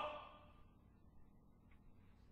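Near silence: a faint steady hiss, with the last word of a man's speech fading out right at the start.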